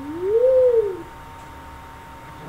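A girl's voice humming one note that glides up and back down, lasting about a second.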